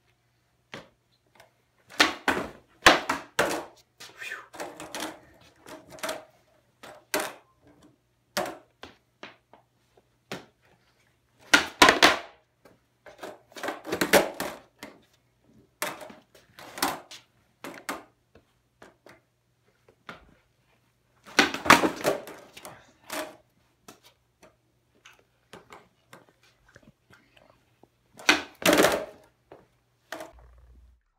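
Skateboard attempts on concrete: the tail pops and the wooden deck and wheels clatter and slap down onto the floor in clusters of sharp clacks and thuds every few seconds, with quiet stretches between tries.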